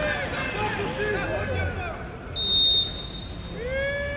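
A referee's whistle blows once, short and loud, about two and a half seconds in: the signal for the penalty kick to be taken. Men shout on the pitch before and after it.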